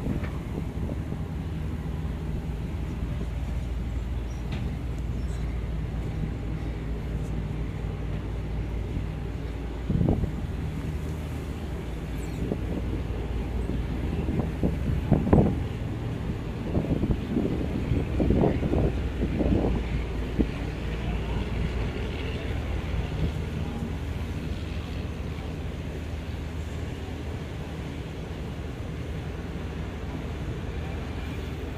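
Steady low engine hum of outdoor port ambience, with a knock about ten seconds in and a scatter of sharper knocks and bangs from about fifteen to twenty seconds in.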